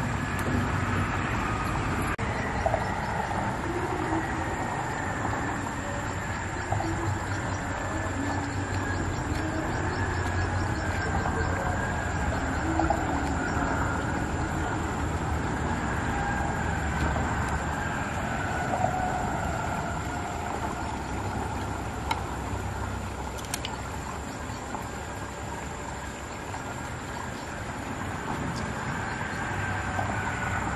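Steady rumbling background noise with a thin high steady whine, and a few small clicks and taps of mussel shells being handled.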